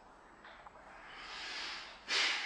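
A faint, drawn-out breath, a soft airy hiss that swells over about a second toward the end.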